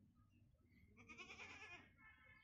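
A single faint animal call about a second in, wavering in pitch and lasting under a second, over very quiet outdoor background.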